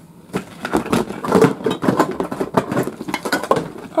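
Small metal cat food cans clinking and knocking against each other and the sides of a clear plastic bin as they are taken out and put in, in a quick, irregular series.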